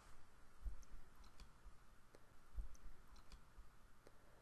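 Quiet room tone in a pause of reading, with a few faint scattered clicks and two soft low thumps.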